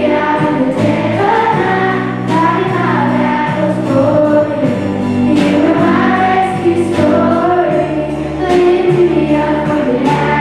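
Live contemporary worship song: female voices singing a slow melody over keyboard, acoustic guitar and drums, with cymbal crashes about four times.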